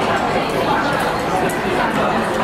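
Steady background chatter of many diners in a busy restaurant, no single voice standing out, with faint light clicks of tableware now and then.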